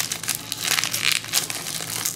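Gold foil trading-card pack wrapper being crumpled in the hands: a run of irregular crinkles, over a faint steady low hum.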